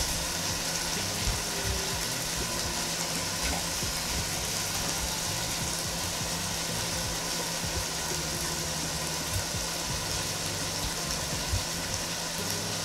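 Ground beef and vegetables sizzling steadily in a pot on a hot stove.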